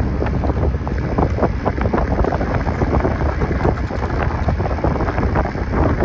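Wind rumbling steadily on the microphone, mixed with crackling splashes of water.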